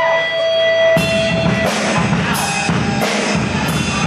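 Hardcore band playing live: a held, ringing guitar tone, then about a second in the drums and distorted guitars come in together, with cymbal and snare hits at a steady beat.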